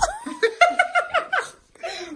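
A young woman laughing: a quick run of short ha-ha laughs over the first second and a half, then a softer, breathy trailing off.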